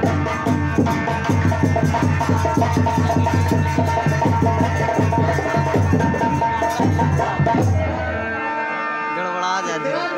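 Live music of fast, dense drumming with a steady held note above it; the drumming stops about eight and a half seconds in, and a voice comes in near the end.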